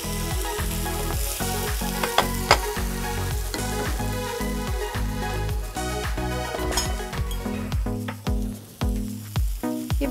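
Diced vegetables and quinoa sizzling in a nonstick frying pan while a wooden spatula stirs them, with a couple of sharper spatula taps on the pan about two seconds in.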